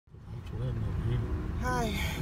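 Steady low rumble of a car, as heard inside its cabin, fading in at the start, with a person's voice over it and a falling vocal sound near the end.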